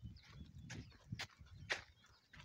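Footsteps crunching on dry, loose red earth, about two steps a second, over a faint low rumble.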